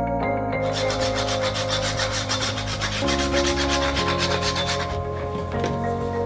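A whole nutmeg being grated on a fine rasp grater: quick, even scraping strokes that stop about five seconds in.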